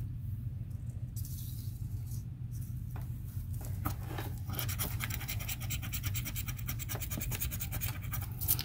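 Plastic scratcher rubbing the latex coating off a Texas Loteria scratch-off lottery ticket in rapid back-and-forth strokes. It is sparse at first and turns into steady fast scratching about halfway through, over a low steady hum.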